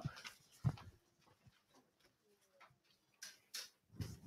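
Quiet room with a soft low thump about two-thirds of a second in, and a few faint sharp clicks near the end.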